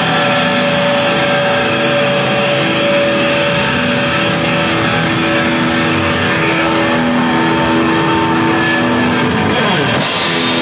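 Loud distorted electric guitars through amplifiers, ringing out in long held notes over a dense wash of noise, with a note sliding down in pitch near the end.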